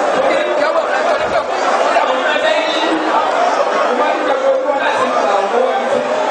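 Many voices speaking at once without a break, a congregation praying aloud together in a large hall.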